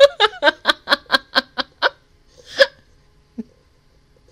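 A woman laughing hard: a rapid, even string of short "ha" bursts, about four or five a second, that stops a little before two seconds in, followed by one more laugh burst.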